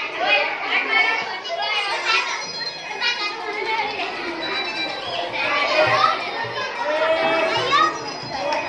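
Many children talking and calling out at once: a continuous chatter of overlapping kids' voices with no single speaker standing out.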